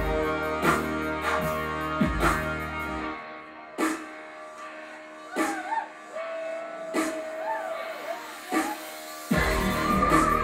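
Live electronic rock band playing on stage, with keyboards and laptop. The full band with a heavy beat drops about three seconds in to a sparse breakdown of single hits and sliding high notes. The full band crashes back in near the end.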